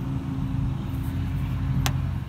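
A steady low rumble with a faint held hum, and one sharp click near the end.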